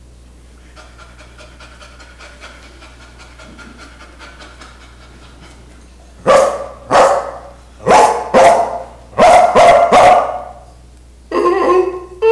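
A man imitating a dog with his voice: quiet, quick panting, then a run of loud barks from about six seconds in. Near the end a long, wavering, horn-like call begins.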